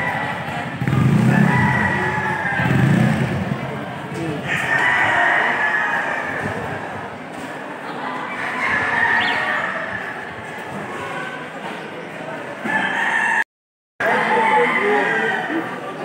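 Gamecocks crowing several times, each crow lasting a second or two, over crowd chatter. The sound cuts out completely for about half a second near the end.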